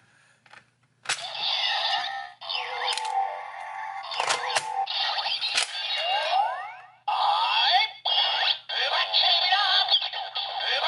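Plastic clicks as the cover of a DX Ghost Driver toy belt is shut over the Ishinomori Ghost Eyecon, then the belt's electronic sound effects and music play loudly through its small speaker, with a synthesized voice, rising swoops and brief breaks between phrases.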